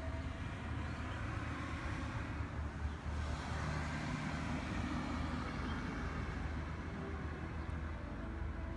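Outdoor road traffic: a steady low rumble with a passing vehicle that swells up in the middle and fades again.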